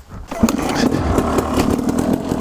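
A Husaberg 250 two-stroke supermoto engine running while the bike is ridden, heard through a helmet-mounted microphone. It cuts in suddenly about half a second in.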